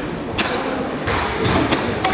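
Karate gi snapping sharply with fast kata techniques, once clearly about half a second in and a few more times near the end, over dull thuds on the competition mat.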